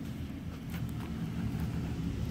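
Low rumble of handling noise from a handheld phone camera being carried while walking, with two faint knocks about a second in.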